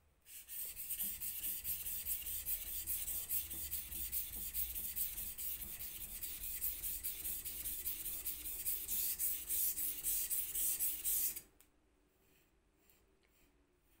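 Steel blade of a single-bevel knife rubbed back and forth on a wet whetstone in quick, even, rasping strokes, grinding the bevel side to raise a burr. The strokes stop about two seconds before the end.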